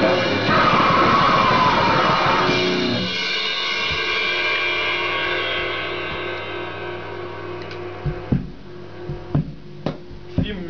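Goregrind band with drum kit and distorted electric guitar playing flat out, then cutting off about three seconds in to a single held distorted guitar chord that rings and slowly fades. A few separate thumps fall near the end.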